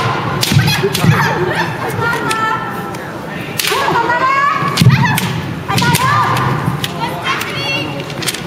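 Kendo sparring: bamboo shinai clacking together and striking the armour, with bare feet stamping on the wooden floor. Loud kiai shouts with rising and falling pitch come about four seconds in and again near the end.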